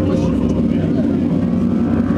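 Loud, dense low rumbling from a recorded intro playing over a venue PA system, the sustained music tones fading under it, with voices mixed in.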